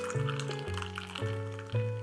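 Soft background music of sustained keyboard-like notes, with a thin stream of milk pouring into a glass underneath it. The pouring dies away about a second and a half in.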